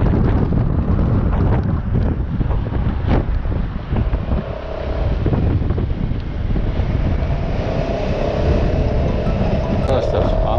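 Wind buffeting the microphone of a Honda Forza maxi-scooter on the move, over a low rumble of engine and road. A steady humming tone joins in over the last couple of seconds.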